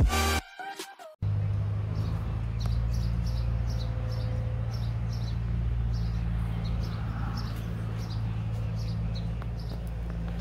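Electronic music cuts off about a second in. Then a small bird chirps over and over, about twice a second, over a steady low hum.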